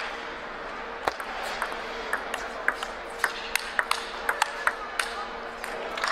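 Table tennis balls clicking off paddles and the table: about two dozen short, sharp, irregular ticks, over a faint steady hum.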